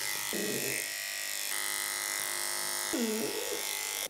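Electric pet grooming clipper running with a steady buzz as its blade is worked through a dog's coat; the tone changes about halfway through.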